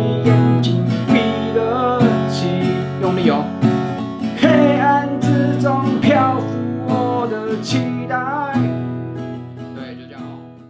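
Acoustic guitar, capoed at the second fret, strummed in a steady down-and-up rhythm, with a man singing the melody along with it. The sound fades out near the end.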